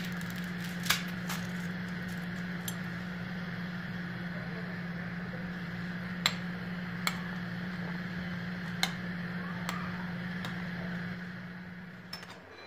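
Spaghetti boiling in an aluminium pot on a gas burner: a steady bubbling hiss over a low, even hum, with a few sharp ticks scattered through it.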